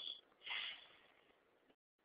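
A man's short breath through the nose or mouth about half a second in, taken in a pause in speech; otherwise very quiet room tone.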